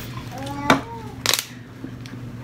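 A thin plastic water bottle being handled: a sharp click, then a brief loud crackle of the plastic as it is gripped or set down, with a short faint voice sound just before.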